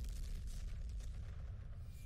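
Faint, steady low rumble of an explosion sound effect from the anime's soundtrack.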